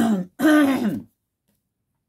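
A woman clearing her throat: two short voiced sounds, each falling in pitch, within the first second.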